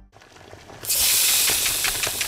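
Food frying in a pan: a steady sizzle with small crackles, starting suddenly about a second in.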